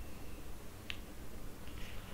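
A single short, faint click about a second in, over low steady background hiss.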